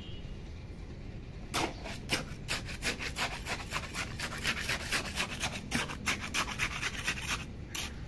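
A small metal trowel scraping and spreading wet cement mortar over a buried PVC pipe. The strokes are quick and rough, about four or five a second, and start about a second and a half in.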